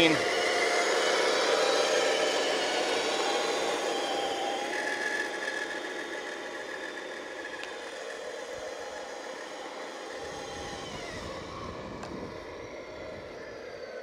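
Radio-controlled semi truck's electric drive motor and gearbox running steadily under heavy load, towing a lowboy trailer carrying a 70 lb RC excavator. The whine fades over the first several seconds as the truck moves away, then holds steady and faint.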